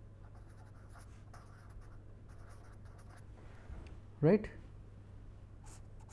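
Pen scratching across paper in short irregular strokes as words are handwritten, over a low steady hum.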